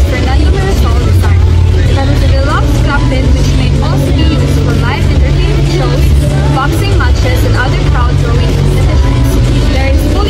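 A loud, steady low rumble, with voices in the background.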